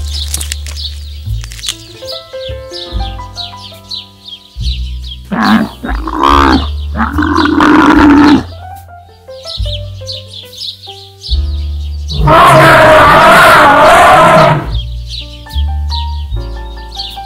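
Background music with a steady beat runs throughout. Over it come two loud animal calls: a pitch-bending call lasting about three seconds, starting about five seconds in, and a louder, rough call lasting about two and a half seconds, starting about twelve seconds in.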